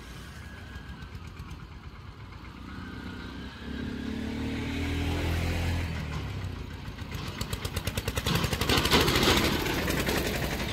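Diesel farm tractor pulling a trailer past close by, its engine hum growing louder about halfway through. It turns into a fast, even clatter that is loudest about nine seconds in as the tractor and trailer go by.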